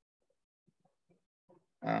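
Near silence with faint room tone, then near the end a man's voice begins a long, drawn-out "I".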